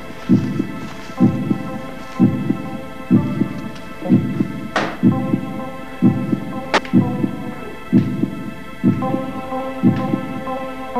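Soundtrack of slow, low thumps about once a second, like a heartbeat, over a sustained droning chord of held tones, with two sharp clicks about halfway through.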